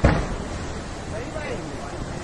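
Steady low rushing rumble of a landslide, rock and earth sliding down the mountainside, with people's voices calling out over it. A loud sudden burst comes right at the start.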